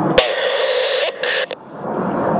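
A radio receiver keying up with a sharp click, then a burst of static hiss that breaks up and cuts off about a second and a half in.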